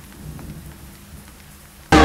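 Faint low rumble with a light hiss, then loud music cuts in suddenly just before the end.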